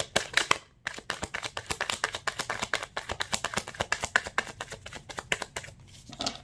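A deck of tarot cards being shuffled by hand: a rapid run of card-on-card flicks with a short break a little under a second in, thinning out near the end.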